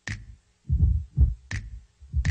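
Drum loop playing back: deep kick drum thumps alternating with sharp, bright snare hits, a few hits a second.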